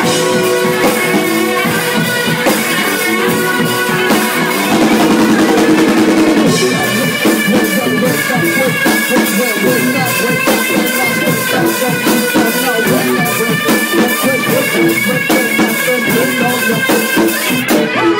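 Live rock jam led by a drum kit, with steady drum and cymbal hits under sustained chords from other instruments; a louder held chord swells about four seconds in and breaks off at six and a half.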